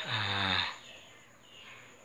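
A man's short, breathy voiced grunt that falls in pitch over about half a second, followed by low background noise.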